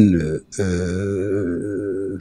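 A man's voice: a spoken word trails off, then a long, steady hesitation sound ('eeeh') is held for about a second and a half before he goes on speaking.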